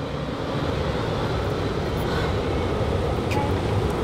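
Steady low rumble of outdoor background noise: wind buffeting the microphone mixed with parking-lot traffic.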